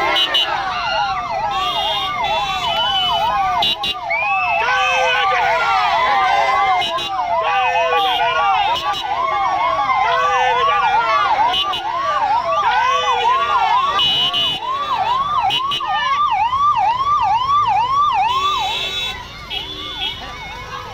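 Electronic vehicle siren in fast yelp mode, its pitch sweeping up again and again in a steady rhythm, stopping shortly before the end, with crowd voices over it.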